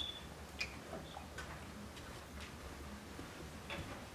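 Carom billiard balls rolling on the cloth, with a few faint sharp clicks about a second apart as the balls knock together.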